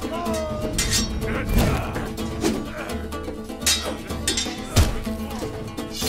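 Dramatic film score with a steady sustained drone and a pulsing low beat, overlaid with fight sound effects. A short cry comes just after the start, followed by several sharp impacts, the loudest a hard hit about five seconds in.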